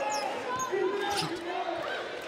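A basketball being dribbled on a hardwood court during live play, with voices in the arena behind it.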